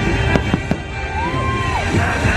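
Fireworks bursting, three sharp bangs in the first second, with music playing underneath.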